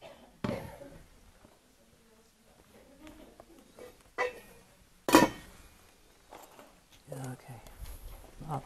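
Kitchen clatter: a few sharp knocks and clinks of cookware and dishes being handled on a counter, the loudest a ringing clank about five seconds in, with low voices near the end.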